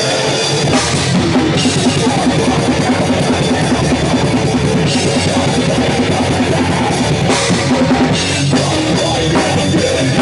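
Hardcore punk band playing live at full volume: drum kit with bass drum and cymbals keeping a steady beat under distorted electric guitar and bass guitar.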